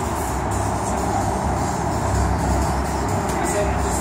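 Steady outdoor street background noise with a low rumble.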